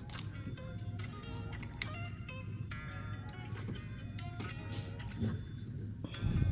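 Background music: a light melody of short notes over a steady low hum.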